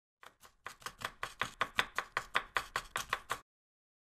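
A knife chopping quickly on a wooden cutting board: a steady run of sharp chops, about five a second, growing louder after the first second and stopping about three and a half seconds in.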